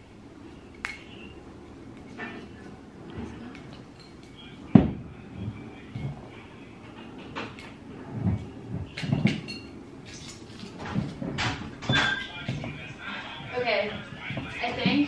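Hands fiddling with the foil-capped top of a wine bottle, trying to twist it open: scattered small clicks and scrapes, with one sharp knock about five seconds in.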